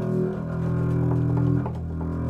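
Acoustic double bass played with a bow, holding a long sustained low note and moving to a new note near the end.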